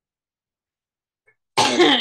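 Near silence, then about a second and a half in a sudden loud cough from a man.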